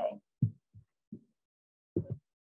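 A few short, soft, low thumps at irregular spacing, with dead silence between them, picked up through a video-call microphone.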